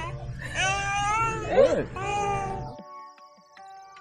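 High-pitched cooing baby talk, voices sliding up and down in pitch between an adult and an infant. It breaks off abruptly about three-quarters of the way through. Soft music with held notes follows.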